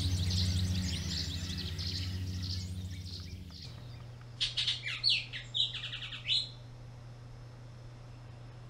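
Songbirds chirping, many overlapping high notes over a low hum. Then, from about halfway, a single bird sings one louder phrase of quick, clear notes lasting about two seconds.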